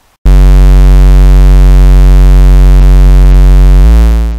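Loud synthesized buzzing drone used as a digital glitch sound effect: a low steady tone with many overtones that starts abruptly about a quarter second in and shifts in tone near the end.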